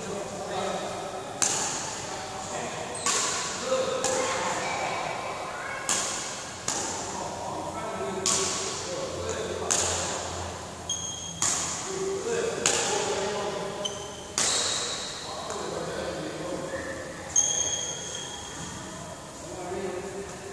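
A badminton rally: rackets striking the shuttlecock in sharp cracks every one to two seconds, each ringing on in the hall's echo. A few short high squeaks of shoes on the court floor come in between.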